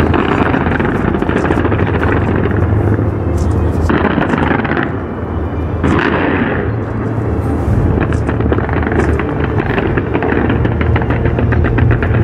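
A dense fireworks barrage going off without a break: a continuous rumble of booms with rapid crackling on top, easing briefly about five seconds in.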